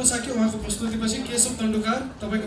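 A man's voice at a handheld microphone, with no instruments.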